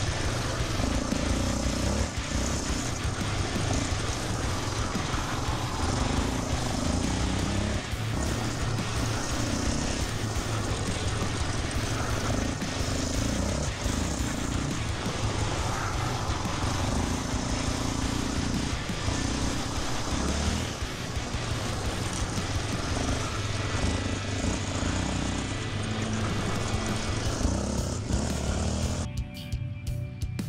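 Yamaha Raptor 700R quad's single-cylinder four-stroke engine running under throttle as it laps a rough dirt track, heard from the onboard camera, with music playing over it. The sound changes abruptly about a second before the end.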